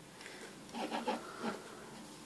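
A thin latex prosthetic being peeled up by hand from a smooth board, giving a few soft rubbing and rustling sounds in the middle.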